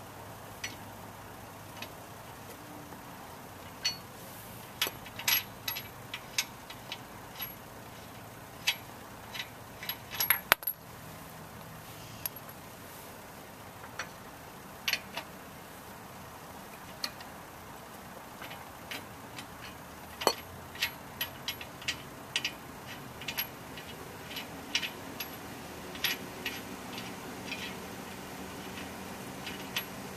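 Irregular sharp metal clicks and clinks of a wheel nut wrench and steel wheel nuts as the nuts are loosened and spun off a car wheel, with the loudest cluster about ten seconds in.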